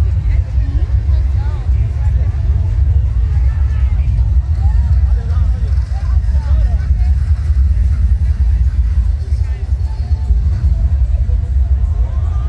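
Music with heavy bass from a sound system on a truck, the deep low end dominating and steady, with people talking nearby.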